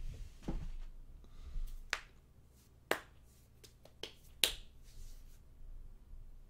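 A handful of sharp snaps or clicks, irregularly spaced about half a second to a second apart, over faint room noise; the loudest comes in the second half.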